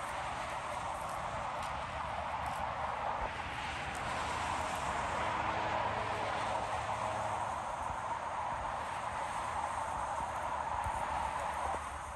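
Steady road noise of highway traffic, tyres on pavement, swelling a little and fading again a few seconds in.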